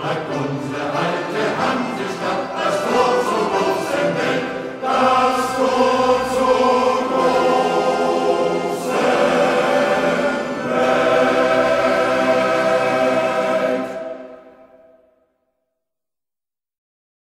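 Male choir singing the last phrase of a song in sustained chords. It ends on a long held final chord that stops and dies away near the end.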